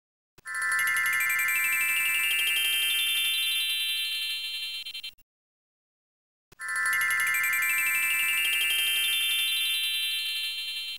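A bright electronic ringing chime with a fast trill, sounding for about four and a half seconds and cutting off sharply, then starting again the same way about a second later.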